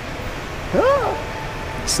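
Steady background noise inside a large store, with one short high-pitched call that rises and falls in pitch about a second in, followed by a faint steady tone.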